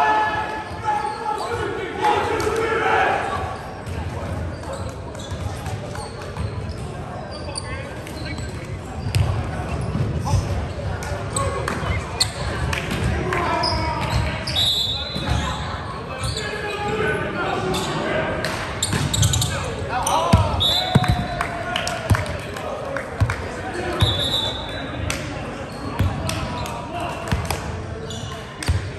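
Indoor volleyball game in a large echoing gym: players' shouts and chatter, with repeated sharp knocks of the volleyball being hit and bounced on the hardwood floor. Brief high squeaks, as of sneakers on the court, come a few times.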